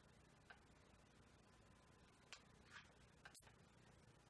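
Near silence: room tone with four faint, brief clicks at irregular moments.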